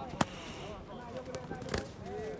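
Kickboxing strikes landing: a loud sharp smack just after the start, then two more smacks near the end as a kick meets the opponent's guard, with faint voices underneath.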